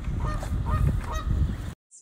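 A goose honking in several short calls over a loud low rumble, the goose still agitated after attacking a dog. The sound cuts off abruptly near the end.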